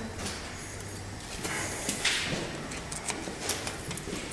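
Hand tool working on a car's brake caliper guide-pin bolts: a few irregular metallic clicks and scrapes, the clearest about two seconds in and again near the end, over steady workshop room noise.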